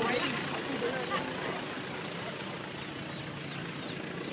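Vehicle engine idling steadily, with voices fading out in the first second.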